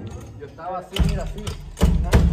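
Acoustic drum kit played live, with two heavy drum hits with a deep low thump, about a second in and again near the end, over worship singing and music.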